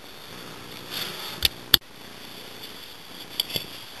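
Steady background hiss with a few sharp clicks: two a little under two seconds in, the second the loudest, and a few smaller ones near the end.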